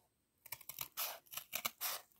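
Long-bladed wallpaper scissors cutting through thin cardboard: a quick run of short, crisp snips that starts about half a second in.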